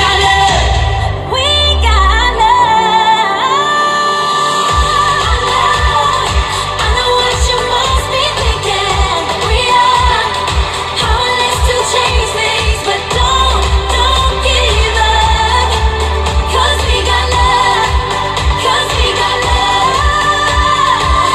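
Recorded pop song with sung vocals playing over the stage PA for a mime dance routine. A steady bass beat kicks back in about five seconds in under the singing.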